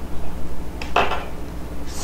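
A short clatter of computer keyboard keys about a second in, over a steady low hum.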